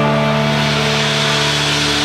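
Live blues trio playing: an electric guitar holds a sustained note or chord over a wash of drum cymbals.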